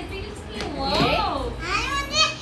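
A young child's wordless voice: a high, drawn-out call that rises and then falls in pitch, with other voices around it.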